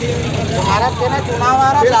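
Several men talking and calling out over one another, with a steady low rumble underneath.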